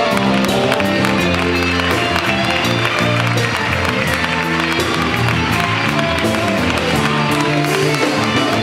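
Live band music with no singing: drum kit keeping a steady beat under bass and electric guitar, playing a copla song between sung verses.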